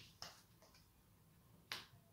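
Tarot cards being dealt and laid down on a table by hand: three short, faint clicks, the loudest just before the end.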